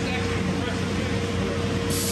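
Steady drone of a running sandblasting air system, fed by a 185 CFM tow-behind air compressor, with a low hum and a steady whine. A loud hiss of air starts near the end.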